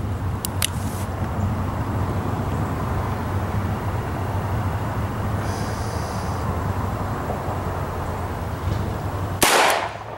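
A stainless six-inch Ruger GP100 double-action revolver fires a single shot near the end. A couple of light clicks come about half a second in, over a steady low rumble.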